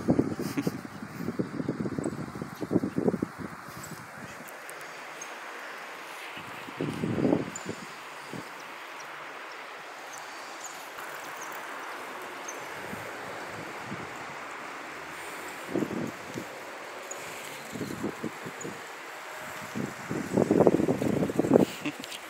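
Steady outdoor background hiss with irregular bursts of low rustling and thumping, in the first few seconds, about seven seconds in, and again over the last few seconds.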